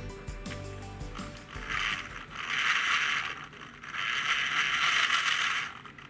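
Toy hand mixer's small motor and gears whirring as its beaters churn thick foamy clay 'cream' in a metal bowl. It runs in two spells with a brief dip between them and sounds close to stalling.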